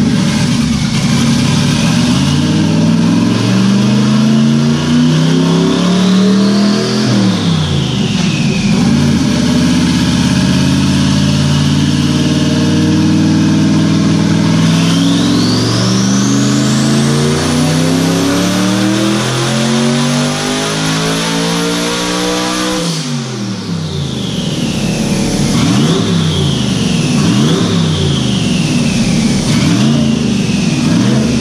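Twin-turbocharged 427 LS V8 of a C5 Corvette pulling on a chassis dyno at up to about 17 pounds of boost. The revs climb, dip about seven seconds in, then climb steadily again while a turbo whine rises to a high pitch and holds. About 23 seconds in the throttle is cut sharply and the engine drops back to lower revs. The pull made 1118 horsepower.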